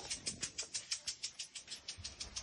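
Faint fast ticking, an even beat of about eight ticks a second.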